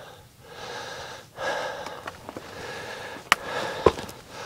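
A person breathing close to the microphone, with two sharp clicks, about three seconds in and just before the end.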